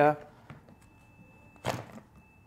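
Plastic float switch of a submersible dirty-water pump being lifted and set by hand: a faint click about half a second in, then one short rattle near the end. A faint, thin, steady high tone sits underneath.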